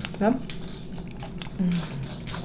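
Close-up mouth sounds of chewing a chocolate pie, soft wet clicks, with a short hummed "mm" near the end.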